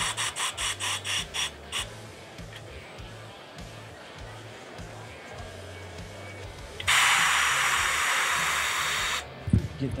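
A quick run of about five brush-like strokes a second for the first two seconds. Near the end comes a loud, steady hiss of compressed air lasting about two seconds, from the tire changer's pneumatic system. Background music with a low beat plays throughout.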